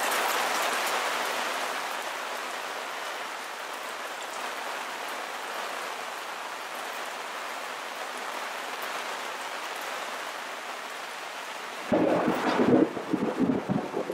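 Steady rain falling on leaves, an even hiss. About twelve seconds in, a louder, uneven low rumble comes in suddenly and runs to the end.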